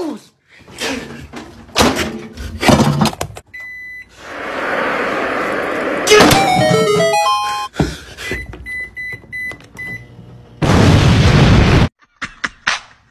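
A chopped-up run of music and sound effects: several short thumps, a steady high beep, a loud burst of noise, a quick falling run of electronic notes, a few short high beeps, and another loud burst of noise near the end.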